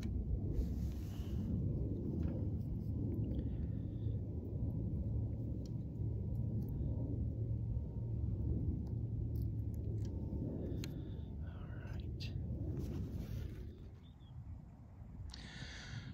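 Wind rumbling on the microphone, a low steady rumble that eases near the end, with a few faint clicks.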